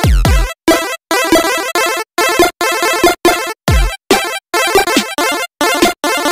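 Outro music, chopped into short stabs with brief silent gaps about twice a second, with a deep falling bass swoop at the start and again a little past halfway.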